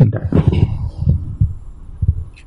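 A few dull, low thumps at irregular intervals as a man's voice trails off.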